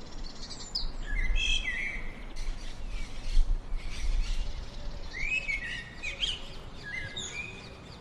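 Songbirds chirping and calling in several bursts of short notes that glide up and down, over a steady low rumble.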